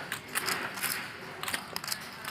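Poker chips clicking together in a run of quick, irregular clicks over the low hum of the card room.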